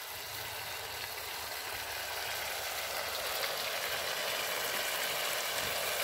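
Sliced vegetables frying in a large aluminium pan over a wood fire, with soy sauce just poured in: a steady sizzle that grows slowly louder.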